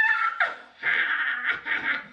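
A woman's voice: the tail of a rising exclamation, then a burst of laughter about a second in.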